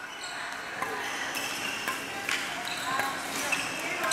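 Badminton drill: rackets hitting shuttlecocks and footfalls on the court, a sharp hit every second or so, over background voices of other players.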